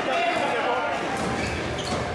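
Indistinct voices over the background noise of a sports hall.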